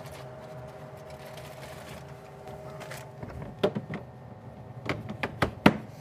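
Steady low hum throughout, then a run of sharp clicks and knocks from about halfway in: handling sounds as someone comes back to the counter.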